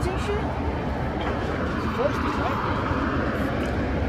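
Steady low rumble of outdoor background noise, with faint voices in the background.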